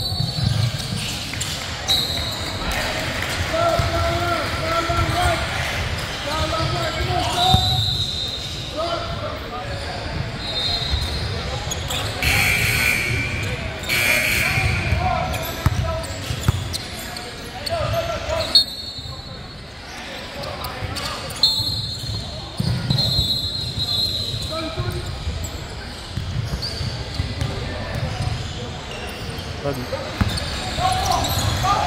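Basketball game in a large gym: a ball bouncing on the hardwood court as players dribble, with sneakers squeaking and players' and spectators' voices calling out across the hall.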